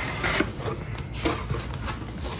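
Cardboard shipping box being handled and its flaps pulled open: irregular rustling and scraping of cardboard, a little louder near the start.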